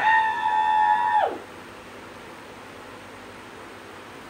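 A person's high-pitched held cry: the voice slides up, holds one note for about a second, then drops away and stops, leaving only a steady background hum.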